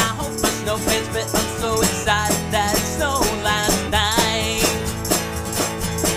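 A man singing a children's song while strumming a guitar.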